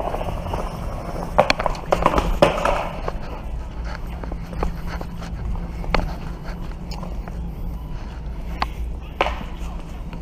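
Small skateboard's wheels rolling on a smooth, hard store floor: a steady low rumble, broken by several sharp clacks of the board.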